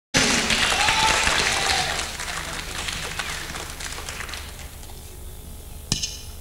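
Concert audience applauding, with a whistle in the first two seconds. The applause fades away over about five seconds, and a single sharp click comes just before the end.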